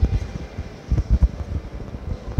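Irregular low rumbling thumps of handling and wind noise on a phone's microphone while it is carried at walking pace.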